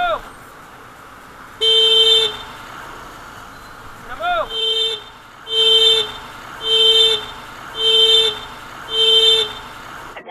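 Electric motorcycle horn honked six times at a pedestrian crossing in front: one held beep about a second and a half in, then five short beeps about a second apart.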